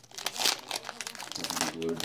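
Foil wrapper of a Pokémon card booster pack crinkling in the hands as it is opened and the cards are slid out, a quick run of crackles.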